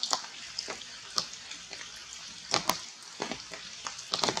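Steady rain hissing on forest leaves, with a few sharp ticks from drips or twigs.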